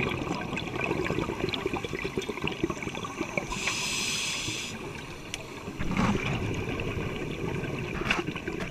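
Underwater sound of scuba diving picked up by the diver's camera: constant crackling and gurgling water noise, with a hiss of about a second near the middle from the scuba regulator and a low bubbling burst of exhaled air about six seconds in.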